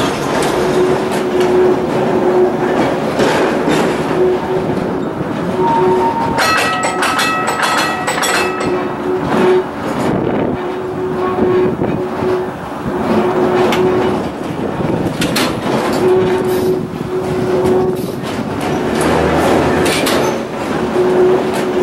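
Streetcar running along the rails: continuous wheel-on-rail noise and clatter, with a steady hum that drops in and out. About six seconds in, a couple of seconds of high ringing tones and sharp clicks.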